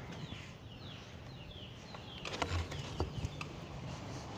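Small birds chirping in short repeated down-slurred calls. Several light clicks and knocks come a little past the middle.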